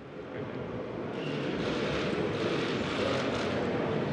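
Many press camera shutters clicking rapidly during a photo call, building over the first second into a steady clatter.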